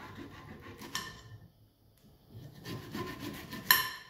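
A knife sawing through the thick peel of a prickly pear to cut off its ends, in two spells of rasping strokes with a short pause between them. A light click about a second in and a sharper click near the end.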